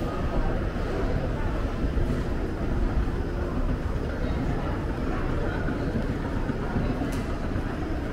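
Escalator running with a steady low rumble, under a murmur of background voices.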